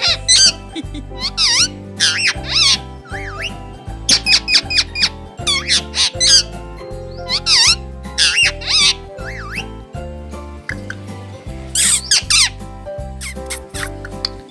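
Indian ringneck parakeet making repeated short, high squeaky calls that waver up and down in pitch, about one a second with a pause of about two seconds near the end, over background music with a steady beat.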